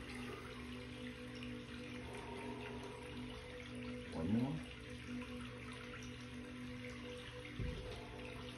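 A steady low hum over a faint hiss, with a short rising pitched sound about four seconds in.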